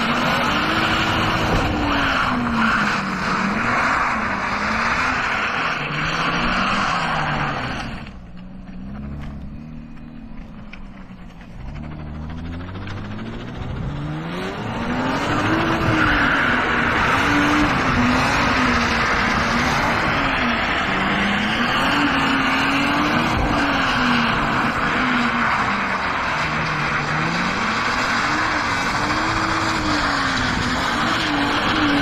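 Car engine being revved up and down repeatedly over a continuous tyre squeal as the car drifts. About eight seconds in, the revs and the squeal drop away for several seconds, then both climb back and keep swinging.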